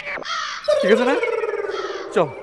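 Two men crying aloud in exaggerated, comic wailing. A short cry comes first, then one long drawn-out wail that slowly sinks in pitch, with a second voice briefly joining it.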